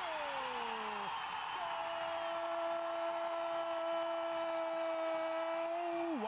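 Brazilian football commentator's drawn-out goal call: a falling shout for about a second, then one long note held steady for over four seconds, over crowd noise. It announces a goal just scored.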